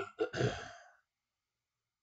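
A man clearing his throat once, briefly, in the first second.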